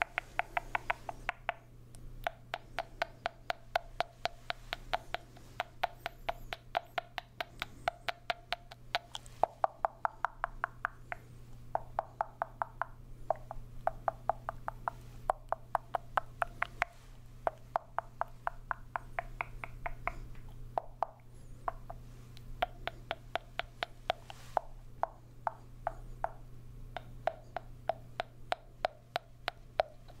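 Mouth clicks and smacks made into a small plastic traffic cone held to the lips, many sharp clicks in quick runs with brief pauses, each with a hollow note from the cone.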